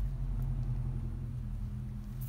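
A steady low mechanical hum, like an engine running, slowly getting quieter.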